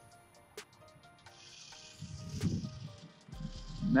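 An automatic pond fish feeder going off, scattering feed onto the water with a hissing, pattering spray that starts about a second in, and a low hum joining near the end. Faint background music sits underneath.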